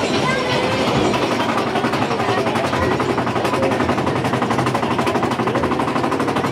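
Mine-train roller coaster climbing a chain lift hill: a rapid, even clatter from the lift chain and anti-rollback ratchet under the train.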